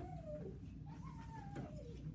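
A child's voice making two long, drawn-out cat-like calls. The first slides down and ends about half a second in. The second rises and then falls away, ending near the end.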